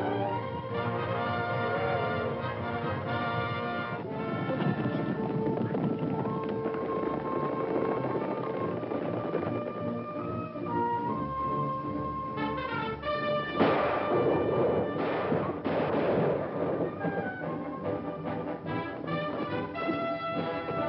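Orchestral film score led by brass, with sustained chords and moving lines throughout. About two-thirds of the way through, two loud noisy crashes sound over the music, a second or so apart.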